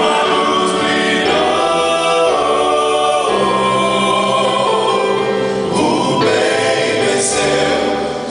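Male vocal group singing a Portuguese gospel song in close harmony through microphones, with keyboard accompaniment underneath; the voices hold long chords that change every second or two.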